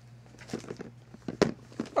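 Orange plastic Tupperware container being handled and opened, giving a few light clicks and knocks of plastic, the sharpest one about one and a half seconds in.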